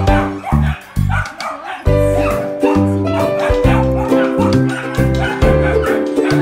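Background music with a steady beat and bass line, with a dog barking over it.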